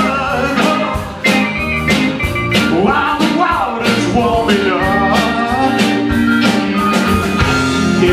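Live band playing an up-tempo blues-rock boogie: electric guitar, bass and drums keeping a steady beat, with a wavering, bending lead line on top.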